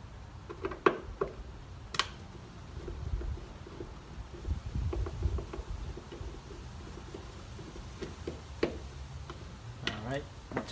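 Scattered light clicks and ticks of a Phillips screwdriver and hands working the screws out of a plastic taillight housing, with a sharp click about two seconds in and a low handling noise in the middle.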